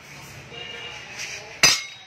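A single sharp metallic clink with a brief ring about one and a half seconds in, as a used scooter CVT clutch assembly in its steel clutch bell is set down against a steel brake disc, after a moment of faint handling rustle.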